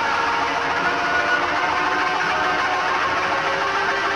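Live blues-rock instrumental from a guitar, bass and drums trio: a dense, steady wall of held electric-guitar tones with no singing.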